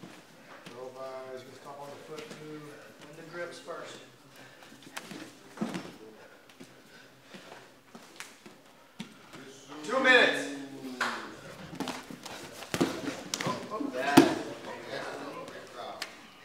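Grapplers scuffling on a foam mat: scattered slaps and thuds of hands, feet and bodies on the mat, with unclear shouts from the onlookers. A loud shout comes about ten seconds in, and a sharp slap near the end is the loudest sound.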